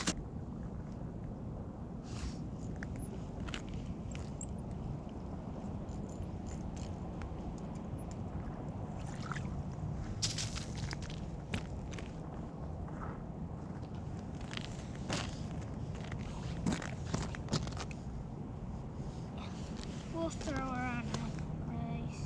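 Outdoor ambience on lake ice: a steady low background rumble with scattered sharp taps and knocks, and a brief voice about twenty seconds in.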